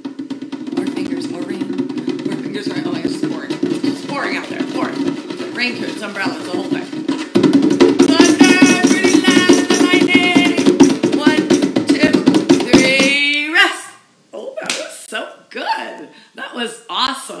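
Fingers tapping rapidly on a hand drum's head, building up in loudness like rain, then about seven seconds in becoming much louder, harder drumming for thunder. The drumming stops suddenly a couple of seconds before the end.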